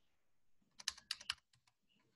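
Computer keyboard keys tapped in a quick run of about six strokes around the middle, followed by a couple of fainter taps, as a typed word in a code editor is deleted back to one letter.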